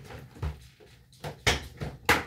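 Clear hard-plastic photo cases being handled and pulled out of their carrying case: a few short plastic clacks and knocks, the sharpest about one and a half seconds in.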